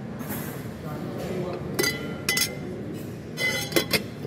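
A glass cloche lid on a butter dish clinking against its glass base several times as it is handled and lifted, each strike leaving a short ringing tone.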